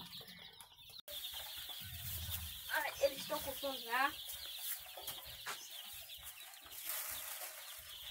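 Dense, continuous peeping of a crowd of day-old caipirão chicks, many rapid high cheeps overlapping, with a short break about a second in.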